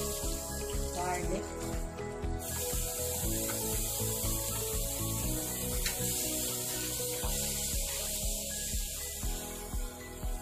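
Wooden spatula scraping and stirring around a nonstick pan of minced garlic in melted butter, with a sizzling hiss that comes up about two and a half seconds in, over background music with a steady beat.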